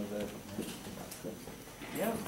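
Indistinct conversation of several people in a room, too faint to make out words, with a few light clicks.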